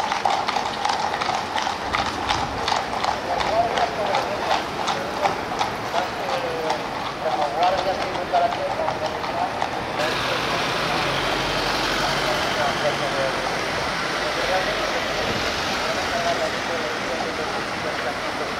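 Horses' hooves clip-clopping on the road as horse-drawn carriages and a mounted police horse pass, over crowd chatter. About ten seconds in the sound changes to denser street noise with fainter hoofbeats.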